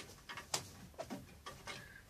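Chickens on roost perches making a few faint, short, soft calls, with light knocks and rustles as a hen shifts and flaps on the pole.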